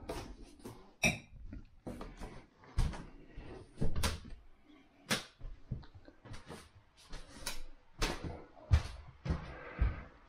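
Footsteps on a wooden floor with knocks and rubbing from a handheld camera being carried, irregular thumps roughly once a second.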